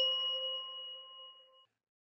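A single bell-like chime sounding once as a logo sting: a clear ding of a few pure ringing tones that fades out over about a second and a half, then cuts off.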